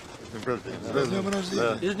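Men's voices talking, exchanging congratulations in Russian.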